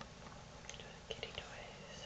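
Quiet speech: a voice saying "kitty toys".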